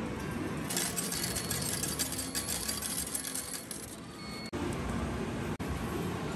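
Coins clattering out of an arcade change machine into its return tray for about three seconds, starting about a second in.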